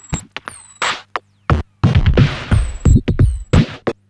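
Circuit-bent Yamaha DD-8 drum machine playing a glitchy, irregular stream of drum hits, its pitch modulated by an external sequencer and its signal split through a bandpass filter bank. Short high whistles fall in pitch after some hits, over a steady low hum.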